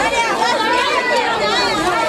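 Many people talking at once: overlapping chatter of adult and children's voices in a street crowd, with no single speaker standing out.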